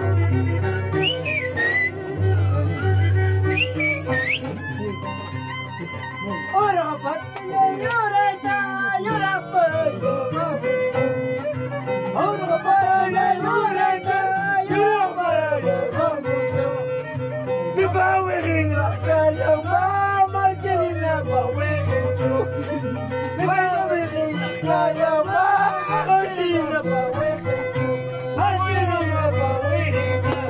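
Andean harp and violin playing a folk tune together. The violin carries a wavering, sliding melody over the harp's steady low bass notes.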